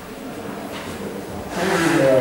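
Chalk scratching and tapping on a blackboard as an equation is written, with a louder, scratchier stretch near the end.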